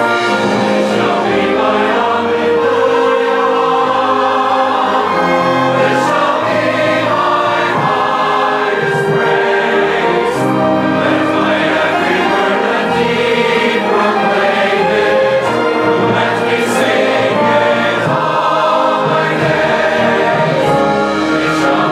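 Large church choir singing an anthem with orchestral accompaniment, held sustained chords changing every second or two at a steady, full level.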